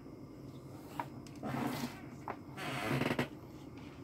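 Faint handling noise on a workbench: a light click about a second in, another a little past two seconds, and short rustling, breathy stretches between them.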